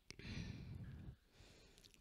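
A soft audible exhalation, like a sigh, into the microphone, lasting about a second.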